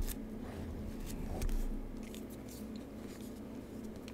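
Quiet room tone with a steady low hum and a few faint, scattered clicks.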